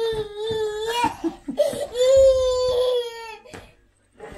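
A toddler wailing: two long, held cries at a steady pitch, the second beginning about a second and a half in.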